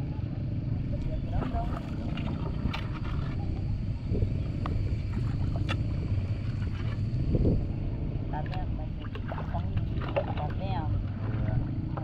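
Steady low rumble of river water and wind on the microphone aboard a bamboo raft, with a few light knocks and faint distant voices toward the end.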